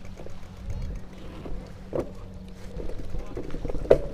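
Low rumbling handling and wind noise on a moving action camera's microphone, with a sharp knock about halfway through and a louder one at the end.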